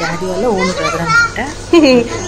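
A small girl's high-pitched voice chattering, with adults talking around her.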